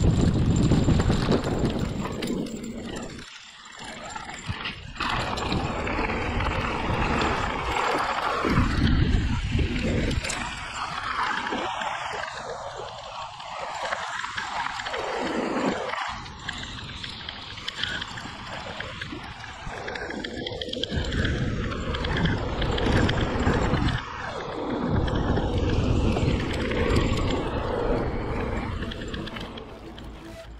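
Wind rushing over the bike-mounted microphone and tyres rolling over a dry dirt forest trail as a hardtail e-mountain bike rides downhill. The noise swells and drops with speed, and breaks off abruptly about halfway through at a cut.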